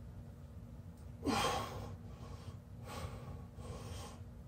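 A man breathing hard under the effort of holding a headstand: one loud, sharp breath about a second in, then two softer breaths near the end.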